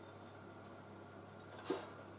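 Faint scratching of a marker pen on sheet steel over a steady low hum, then one sharp metallic clunk near the end as a metal piece is set down on the steel sheet.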